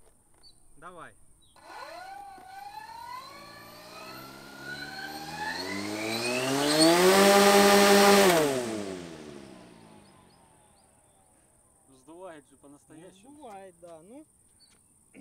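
Pair of brushless electric motors driving coaxial 30-inch propellers, run up to maximum thrust. The motor whine climbs steadily in pitch for about five seconds. It holds at its loudest for about a second and a half with a rush of propeller wash, then winds down over the next two seconds.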